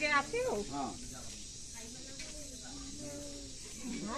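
People talking close by in the first second, then fainter voices in the background over a steady high hiss.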